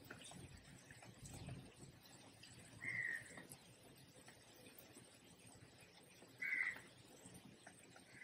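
A bird calling twice, two short calls about three and a half seconds apart, over faint room tone.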